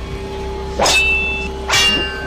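Intro sound design: a steady held music drone with two whoosh effects, one about a second in and one near the end, each followed by a bright ringing shimmer.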